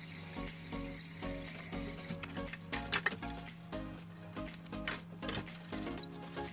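Hand-washing dishes in a kitchen sink: a soapy sponge scrubbing a plastic basin, with a few sharp clinks of dishware. Background music plays throughout.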